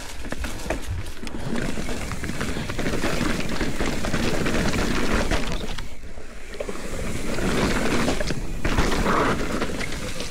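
Mountain bike rolling over leaf-covered dirt and rock, tyres running through dry leaves while the bike rattles with many small knocks over a steady rush of wind noise. The noise dips briefly about six seconds in, as the bike goes over the rock.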